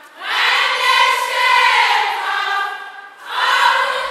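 A large group of girls singing together in chorus, in long held notes. One phrase runs most of the way through, breaks briefly about three seconds in, and a new phrase begins.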